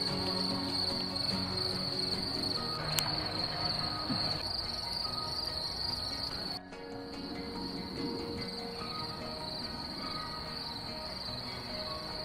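Crickets chirring in a steady, high, unbroken trill over quiet background music. The trill drops out for an instant about six and a half seconds in, then carries on.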